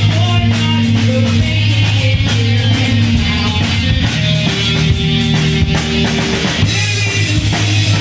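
Live rock band playing, with electric guitar, bass and a drum kit keeping a steady beat.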